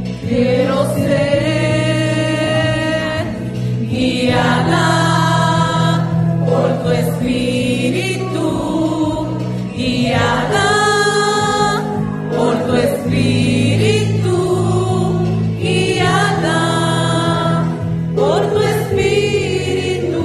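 Christian worship music: voices singing a slow song with wavering held notes over steady sustained low chords.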